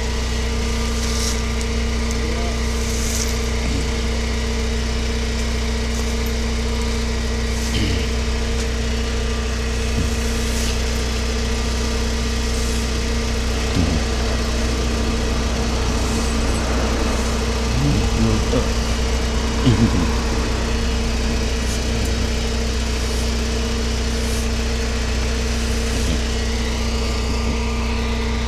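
Tow truck's engine idling steadily, a constant low rumble with a steady hum over it.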